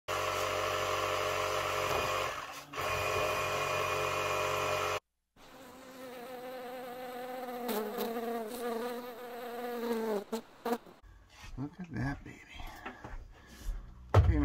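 Yellow jackets buzzing in a steady drone that cuts off abruptly about five seconds in. After a short silence a wavering buzz runs until about ten seconds, followed by a few faint knocks.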